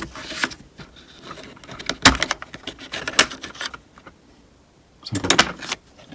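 Plastic and metal clicks and knocks from a car door latch and lock actuator assembly being handled and turned over on a workbench, in three short clattering bursts: near the start, from about two seconds in, and about five seconds in.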